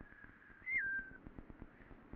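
A faint whistled tone that jumps up in pitch and drops back about half a second in, then holds briefly, over a light steady crackle.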